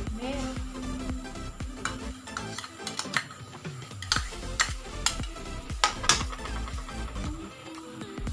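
Metal spatula scraping a bowl and clinking against it and the wok as milk is poured into the hot pan: a string of sharp metal clicks, with a light sizzle. Background music plays throughout.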